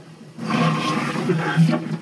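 Several audience members calling out an answer at once, overlapping voices starting about half a second in.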